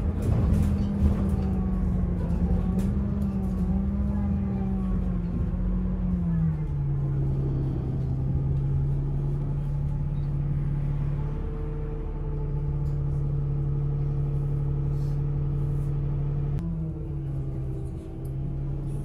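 A city bus's motor and drivetrain running while it drives, heard from inside the cabin as a steady low rumble with a humming drone. The drone drops in pitch about six seconds in and then holds steady, with light rattles of the bus interior over it.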